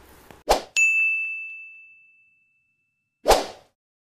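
Sound effects of an animated subscribe button: a whoosh, then a bright bell-like ding that rings out and fades over about a second and a half, and a second whoosh near the end.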